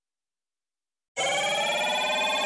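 A loud ringing chord with many overtones starts suddenly about a second in, after complete silence, and then holds steady.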